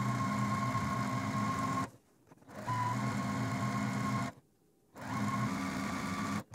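Juki TL2000Qi straight-stitch sewing machine running at a steady speed, stitching a quarter-inch seam through two fabric strips. The stitching stops twice for a moment, about two seconds in and again just after four seconds, and runs on each time.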